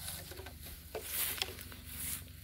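Rustling and crackling in dry grass with scattered sharp clicks, as of someone walking through it.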